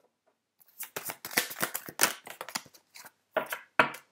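Oracle cards being handled and drawn from the deck: a quick run of papery clicks and rustles, then a few sharper card snaps near the end as a card comes free.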